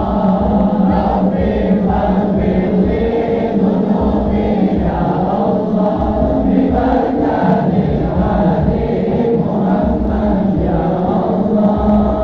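A large crowd of men singing sholawat together in unison, a devotional chant with held, swaying notes over a low, regular beat.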